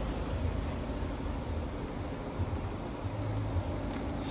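Steady low hum and hiss of background room noise, with no distinct event; a faint low hum rises briefly about three seconds in.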